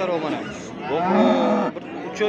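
A head of cattle mooing: a loud call lasting about a second that cuts off abruptly, with a short lower call just before it.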